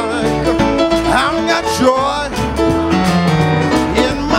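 Live church praise band playing an upbeat gospel song, with voices singing along.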